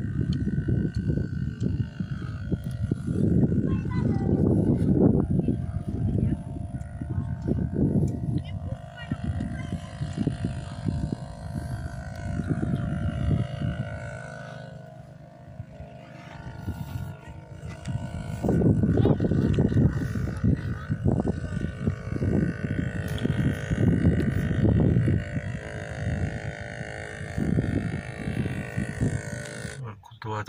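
Wind buffeting a phone microphone outdoors: an irregular low rumble in gusts that eases about halfway through, then picks up again.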